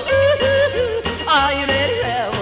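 1956 British rock and roll playing from a 78 rpm shellac record on a Garrard turntable, in an instrumental break with no sung words. A wavering lead line with vibrato runs over a run of short, steady bass notes.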